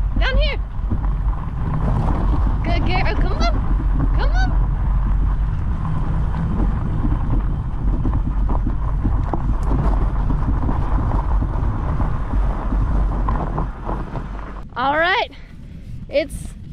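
Wind rushing and buffeting over a body-worn microphone while riding a bike along a dirt track, a steady low rumble that drops away about a second and a half before the end as the bike stops.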